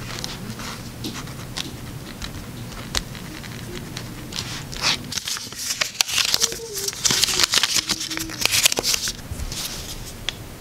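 Pen scratching on a paper notepad in short strokes, then a sheet torn off the pad and handled, giving a run of loud paper ripping and crinkling in the second half.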